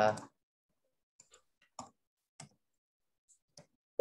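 A drawn-out hesitation 'uh' trails off, then a near-silent pause broken by about six faint, scattered clicks.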